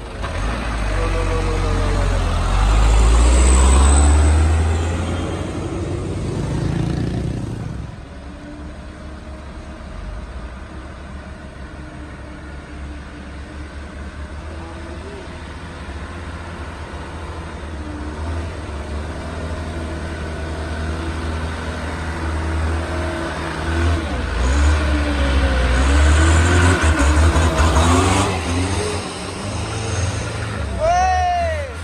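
Diesel truck engines working hard up a steep climb. One truck passes close and loud in the first few seconds, then the engine sound settles to a quieter running. Near the end another truck's engine grows loud again as it labours uphill.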